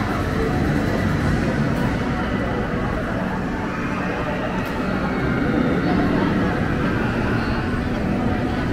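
Busy crowd ambience: indistinct voices of many people over a steady low rumble.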